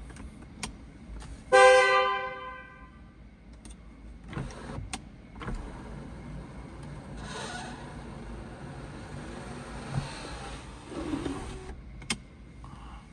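Power sunroof of a 2013 Mercedes-Benz E350: switch clicks, then the sunroof motor running steadily for about six seconds as the glass panel slides. Near two seconds in there is a loud ringing tone that starts sharply and fades over about a second and a half.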